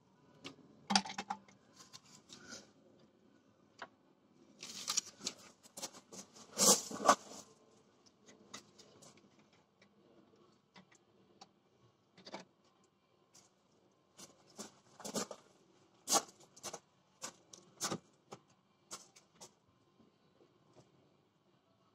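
Irregular light clicks, taps and rustles of hands and tools working around a clutch slave cylinder's bleeder valve and hose, with a louder cluster of scraping noises about a third of the way through.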